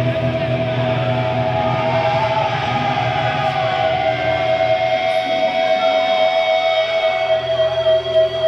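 Heavy metal band playing live, recorded from the crowd: electric guitars hold long sustained notes over the bass, and the low end drops away about seven seconds in.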